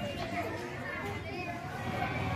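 Indistinct background chatter of several voices, children's among them, with no clear words.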